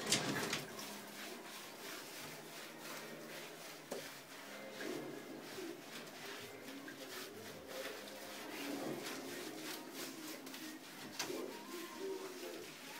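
A soapy dog being washed in a bathtub: water splashing, with a sharp splash right at the start and hands rubbing its wet coat throughout. Soft, low, wavering coo-like murmurs come now and then, mostly in the second half.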